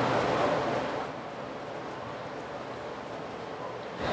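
Steady hiss-like room noise, dropping to a quieter level about a second in.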